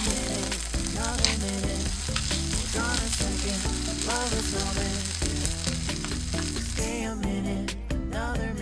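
Fried rice sizzling in a hot nonstick frying pan as it is stirred and tossed with a spatula. The sizzle drops away about seven seconds in.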